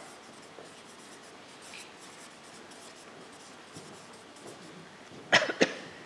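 Felt-tip marker writing on flip-chart paper: faint scratchy strokes. A little over five seconds in come two loud short sounds about half a second apart.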